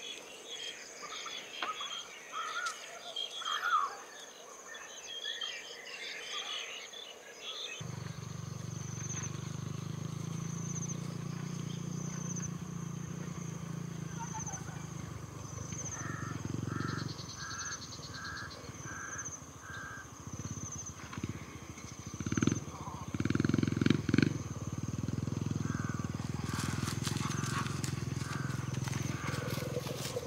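Outdoor dusk ambience: faint, distant children's voices with a steady high insect tone. After about eight seconds a steady low rumble joins in, with a short sound repeated about twice a second and a few louder thumps.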